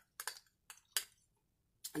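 A metal spoon clicking against a small glass bowl as the last of the shredded cheese is scraped out: about four short, sharp clicks in the first second, then quiet.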